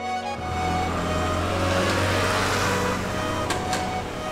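Background music over the rushing noise and low rumble of passing road traffic, swelling about half a second in and easing off near the end, with two short clicks near the end.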